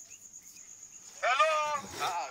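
A person's voice raised in a long, drawn-out shout with a wavering pitch, starting a little past halfway through after a quiet start.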